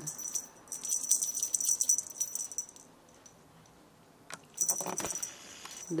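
A small rattling cat toy shaken in quick bursts to draw a kitten's attention: a run of about two seconds, a pause, then a shorter shake near the end.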